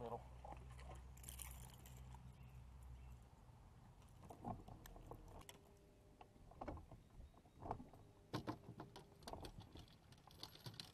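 Low steady hum of a bass boat's electric trolling motor that cuts off about three seconds in, followed by scattered light knocks and clicks.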